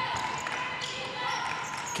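Live court sound of a basketball game in a gym: a ball being dribbled on the hardwood floor, with faint voices and a steady background murmur.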